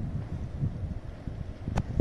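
Wind buffeting the microphone: an uneven, gusty low rumble. A single sharp click sounds near the end.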